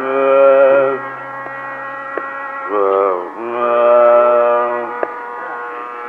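Carnatic varnam in raga Darbar: slow, long-held notes swelling over a steady drone, with one wavering, ornamented note about three seconds in.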